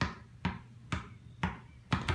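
Basketball dribbled on a concrete driveway: five bounces at a steady rhythm, about two a second.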